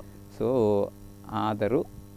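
Steady electrical mains hum in the audio line, with two short spoken sounds over it.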